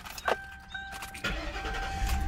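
Lincoln Town Car's 4.6-litre V8 started with the key: a click, then the engine catches about a second in and settles into a steady run. A steady electronic warning tone sounds over it.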